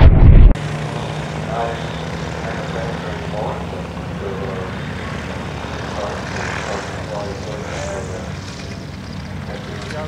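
A voice is cut off abruptly about half a second in, giving way to the steady hum of an Aerolite 103 ultralight's engine and propeller, with voices faintly over it.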